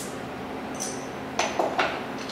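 Cap pried off a glass beer bottle with a bottle opener: a sharp snap as it comes off, then a few short clicks and clinks about a second and a half in.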